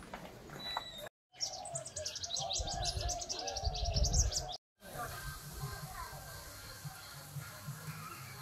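Outdoor village ambience: small birds chirping in a fast run of high, thin notes, with people talking faintly in the background. The sound drops to silence for a moment twice.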